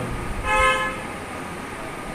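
A vehicle horn gives one short steady toot, about half a second long, starting about half a second in. Low background noise follows.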